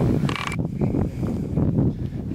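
Wind buffeting the camera's microphone: a loud, irregular low rumble that starts abruptly.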